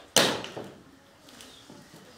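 A single sharp knock about a fifth of a second in that dies away within half a second, followed by faint handling sounds.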